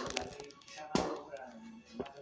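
Faint speech and music in the background, with two sharp knocks: one right at the start and a louder one about a second in.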